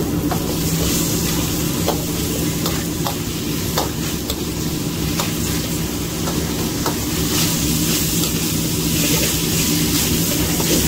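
Stir-frying in a carbon-steel wok: food sizzling steadily while a metal spatula scrapes and clinks against the pan at irregular moments, over a steady low hum.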